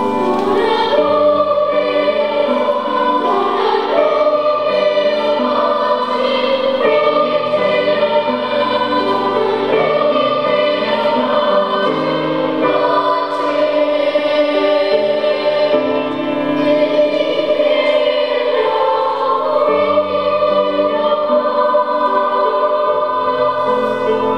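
Children's choir singing held notes in a slow, flowing sacred piece, with piano accompaniment.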